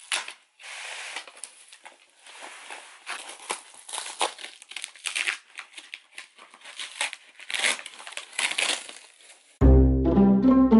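Flat-pack cardboard box being torn open: cardboard flaps ripping, crinkling and scraping in irregular bursts. Near the end, loud background music starts abruptly.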